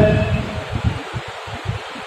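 The end of a man's drawn-out word through a microphone in a hall fades in the first moments. The rest is a pause filled with a low, fluttering rumble of room and microphone noise.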